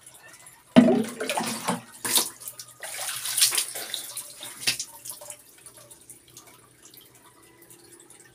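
Water being splashed and poured over a person washing with water from a basin, starting suddenly about a second in with several surges of splashing for about four seconds, then dying down.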